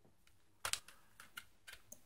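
Plastic CD jewel case being handled and opened: a quick, irregular series of small sharp clicks and taps, starting a little over half a second in.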